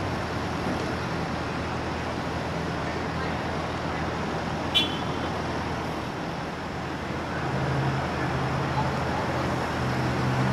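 Steady background traffic noise. A single short, high chirp sounds a little before halfway through, and a low steady hum, like an engine running, comes in about three-quarters of the way through.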